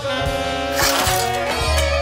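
School jazz band playing a swing tune together: saxophones, trombones and trumpets over upright bass and drums, with a cymbal crash about a second in.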